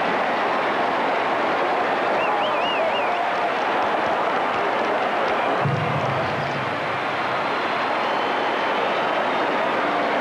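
Large stadium crowd cheering loudly and steadily in reaction to a long touchdown run, with a brief warbling whistle a couple of seconds in.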